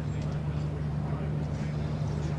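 Cricket-ground ambience on a television broadcast: a faint murmur of crowd voices over a steady low hum.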